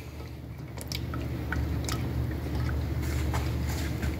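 Silicone spatula stirring thin, milky farina in a pot: soft sloshing of the liquid with a few faint ticks against the pan, over a steady low hum.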